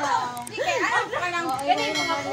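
Children's voices talking and calling out over one another, high-pitched and overlapping.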